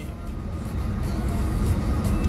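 Low car rumble heard inside the cabin, growing gradually louder.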